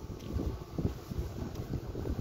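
Wind buffeting a phone's microphone: an uneven low rumble.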